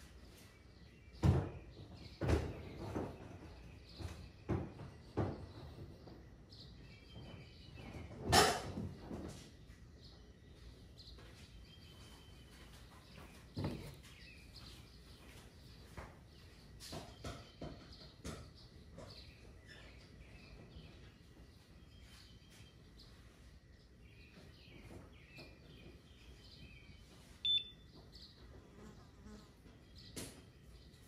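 Clicks and knocks from handling the trolling motor's wiring and connectors, the loudest about eight seconds in. Near the end comes a single short, high electronic beep as the MotorGuide trolling motor powers up with its new control board.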